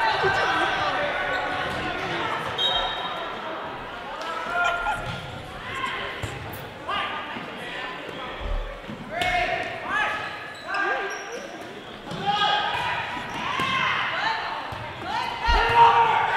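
Volleyball rally in a gymnasium: the ball struck several times, sharp slaps that echo through the hall, with players and spectators calling out throughout.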